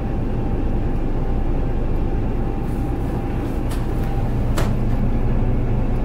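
The motor yacht's twin diesel engines idling steadily, with the bow thruster running to push the bow to the right. Two short clicks come in the second half.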